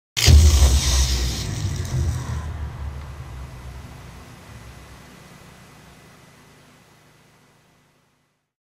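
A single loud boom, heavy in the low end, that dies away slowly over about seven seconds.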